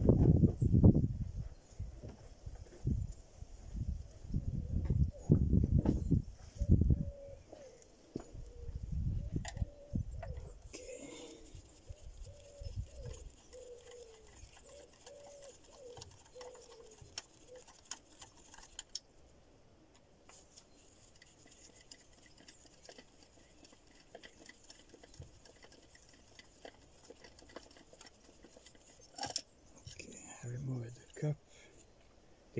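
Low buffeting rumbles in the first ten seconds, then a run of short, evenly spaced animal calls, about two a second for several seconds, with faint clicks of hand work on the engine throughout.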